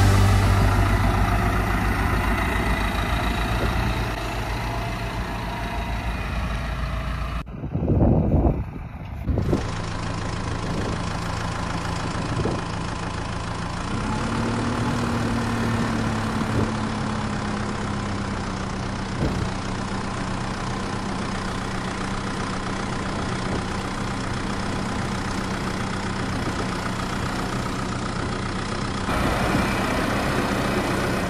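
Farm tractor's diesel engine running steadily. About halfway through it speeds up, then slowly settles back, while the front-end loader tips a bucket of gravel. There is a brief loud low rumble about eight seconds in.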